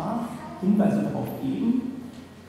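Only speech: a man lecturing into a podium microphone, a couple of short phrases that trail off near the end.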